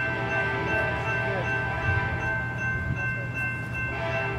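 A train's steady low rumble with a high, steady ringing tone held over it.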